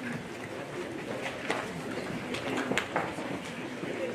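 Indistinct low voices in the room with a few sharp knocks and shuffles as people move about.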